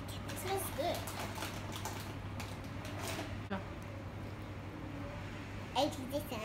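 Short, wordless child vocal sounds over a steady low hum, with a single sharp click about halfway through and a louder laugh-like voice sound just before the end.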